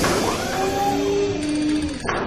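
A loud sound effect laid over the closing end card: a sudden noisy rush with a few faint gliding tones inside it, and a fresh hit near the end.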